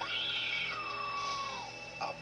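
A boy screaming: one long cry that starts high and slides down in pitch before dying away, over a sustained music score.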